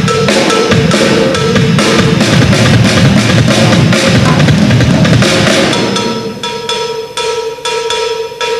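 Tama kit with two bass drums played live as a drum solo: dense, fast strokes on bass drums, snare and toms, easing into a lighter passage with ringing cymbal tones about six seconds in.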